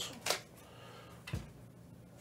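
Faint room tone with two brief handling noises: a short rustle about a third of a second in and a soft knock a little after a second, from hands handling things on a table.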